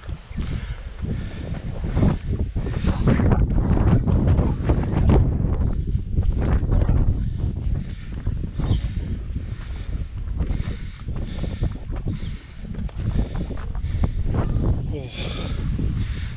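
Wind buffeting the camera microphone on an exposed hillside: a loud, low rumble that swells and drops in gusts, strongest in the first half.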